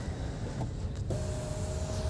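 Cabin noise of a Hyundai Creta driving slowly: a steady low rumble of engine and road. About a second in, a steady tone begins and holds.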